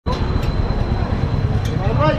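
Steady low rumble of street traffic and motor-vehicle engines, with a voice starting near the end.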